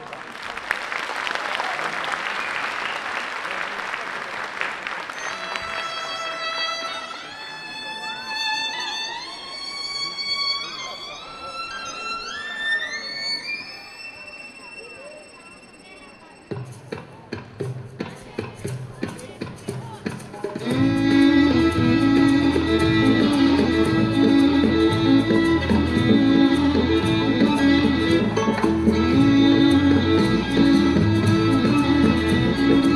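Folk dance music: a few seconds of applause, then a slow solo violin melody with sliding, rising notes, followed by sparse percussive hits, and about two-thirds of the way in a full dance tune with a strong, steady bass beat begins.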